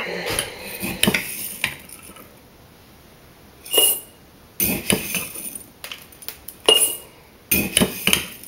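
Metal spoon scooping dried juniper berries from a glass jar and tipping them into a small glass jar: a string of separate clinks and scrapes of spoon on glass, a few with a short glassy ring, with the dry berries rattling into the jar.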